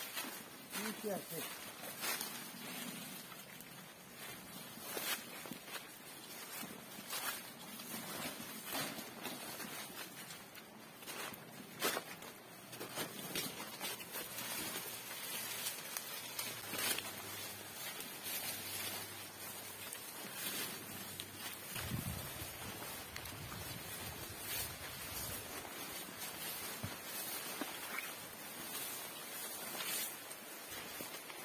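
Footsteps through dry leaf litter and undergrowth: irregular crunches and snaps of leaves and twigs, with vegetation rustling as it is brushed aside.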